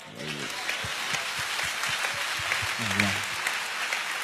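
A large congregation applauding, a dense steady clapping that builds up within the first half-second, with a man's brief laugh near the end.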